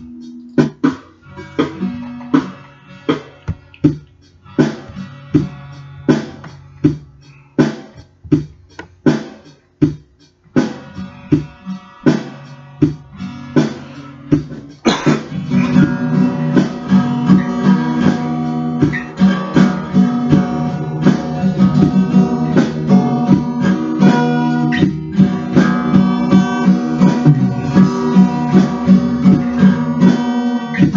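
Solo acoustic guitar: separate chords struck with short gaps between them, then about halfway through a louder, steady rhythmic strumming.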